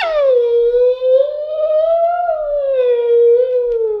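A high, cartoon-like voice wailing one long drawn-out cry of self-pity. It swoops down at the start, rises a little and sinks again toward the end.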